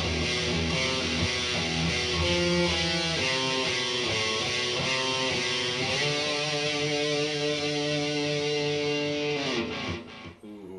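Electric guitar with distortion playing a chord riff, then a long held chord that rings for about three and a half seconds and is cut off just before the end.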